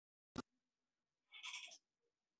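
Near silence on a video-call audio line, broken by one short sharp click about a third of a second in and, about a second and a half in, a brief faint breathy, voice-like sound.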